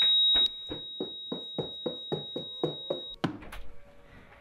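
A steady high-pitched electronic tone, loud for its first half second and then quieter, over a fast regular ticking of about four ticks a second. Both stop about three seconds in.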